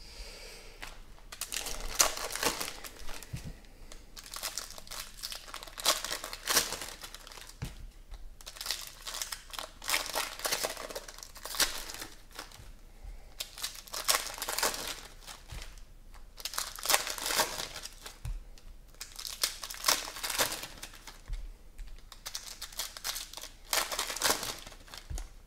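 Foil trading-card pack wrappers being torn open and crinkled by hand, in about seven bursts of crackling a few seconds apart.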